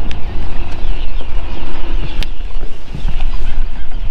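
Wind buffeting the microphone in a steady low rumble, with faint high chirps in the background and a single sharp click a little after two seconds in.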